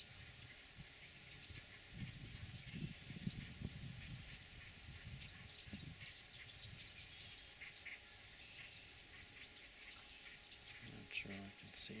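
Faint outdoor ambience: irregular low rumbling of wind on the microphone, strongest in the first half, with scattered faint high bird chirps.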